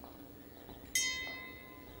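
A small bell struck once about a second in, its bright ring fading slowly.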